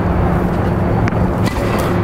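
Steady, loud low rumble with a hum, with a couple of faint clicks about a second in.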